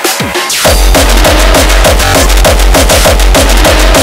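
Industrial hardcore techno track: a few kick drums that drop in pitch, then less than a second in the full beat comes in with a loud, steady distorted bass under a fast kick pattern.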